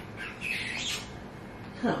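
A baby's high-pitched squeal, under a second long, near the start; a woman's voice begins near the end.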